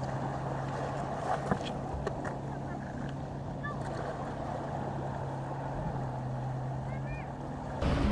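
Seaside ambience on a rocky shore: a steady rush of wind and surf with a constant low hum running underneath, then a few faint short chirps.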